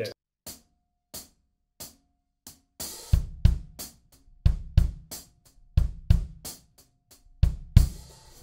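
Acoustic drum kit recorded in the studio, drums alone: four light, evenly spaced ticks count in, then about three seconds in a steady groove starts with kick drum, snare and hi-hat.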